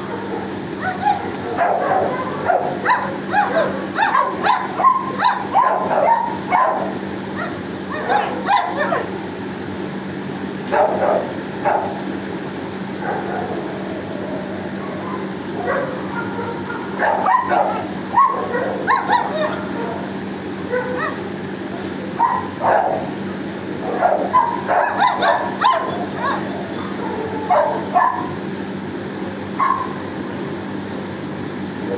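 Dogs barking and yipping in a shelter kennel block, in repeated bouts of short barks with quieter gaps between, over a steady low hum.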